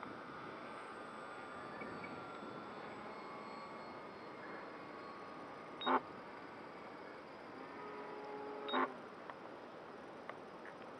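Faint, distant drone of a radio-controlled model airplane's motor and propeller in flight, its pitch drifting slightly, over light background hiss. A sharp click right at the start and two brief voice sounds, at about six and nine seconds.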